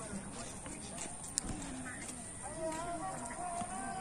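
Indistinct background voices, with a single sharp click about a second and a half in and a steady, slightly wavering tone that comes in about halfway and holds to the end.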